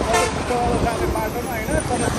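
Engine and road rumble of a vehicle on the move as oncoming trucks pass close by, with a short horn toot just after the start.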